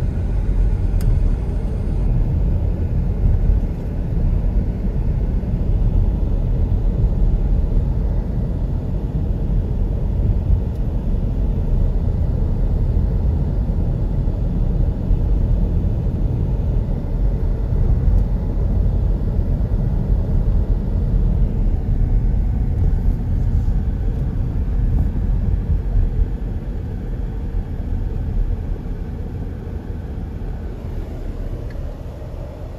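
Steady low rumble of tyre and wind noise inside a moving car, easing slightly near the end.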